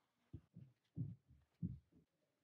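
Faint, soft, low thumps of hands handling a plush teddy bear during hand-stitching, about five of them at an uneven pace.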